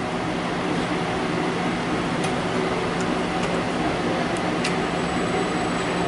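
Industrial robot arm's servo motors and gearing running as the arm moves its pencil tool between taught points, a steady whir and hum with no change in level.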